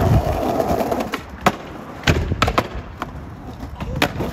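Skateboard rolling over rough asphalt, its wheels rumbling, with a few sharp clacks from the board, one about a second and a half in and a quick cluster a little after two seconds.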